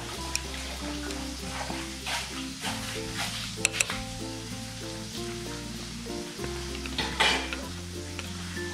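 Wooden chopsticks stirring chicken and sour bamboo shoots in broth in an earthenware pot, with a few sharp clicks and taps, the loudest about four seconds in and near the end. Background music with held notes plays throughout.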